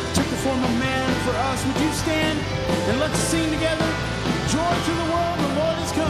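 Live band music: drum kit and electric guitar playing with bass in a rock-style worship song.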